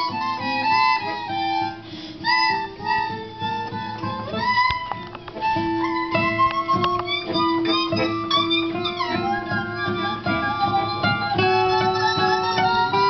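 Piano accordion and acoustic guitar playing an instrumental passage together: held, reedy accordion notes and chords over steadily plucked guitar.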